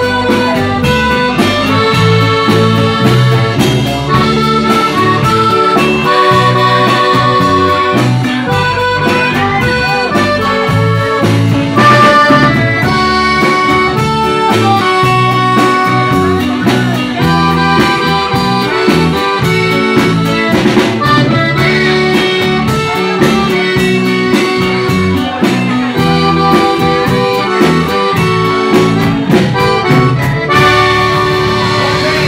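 Live norteño band playing: a button accordion carries the melody in held and running notes over a drum kit with cymbals and a bass line, at a steady loud level throughout.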